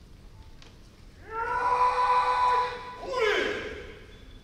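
Kendo fighters' kiai: a long, held, high shout starting about a second in, then a second, shorter shout that falls in pitch near the end.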